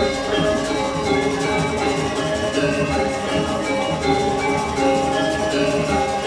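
Balinese gamelan playing: many ringing metallophone tones layered over steady percussion.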